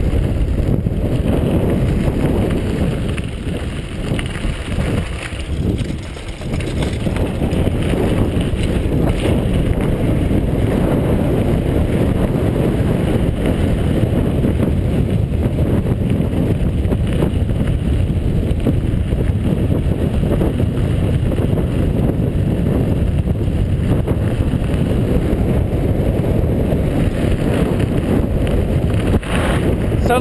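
Steady wind noise buffeting the camera microphone of a mountain bike rolling down a dirt and gravel road, mixed with tyre rumble over the surface. The rush eases briefly about four to six seconds in, then returns.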